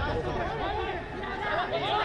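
Rugby players' voices shouting and calling to each other during live play, several at once, growing busier near the end as players close in.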